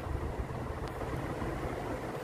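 A steady low rumble of background noise, with a faint tick a little before the middle.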